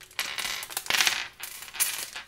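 Small plastic LEGO minifigure parts clattering onto a wooden tabletop as they are shaken out of a crinkling foil blind bag. The rattling lasts about a second and a half, followed by a brief crinkle near the end.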